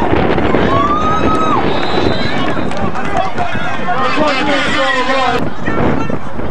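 Football crowd shouting and cheering: many overlapping voices, one long held shout about a second in, and a burst of excited yelling late on that cuts off abruptly.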